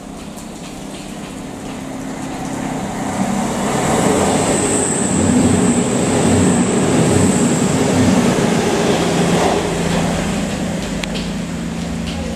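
A CrossCountry Voyager diesel multiple unit passing close by at speed: engine and wheel-on-rail noise build to a loud peak in the middle, with a high whine over it. As it draws away the noise eases to a steady low diesel hum.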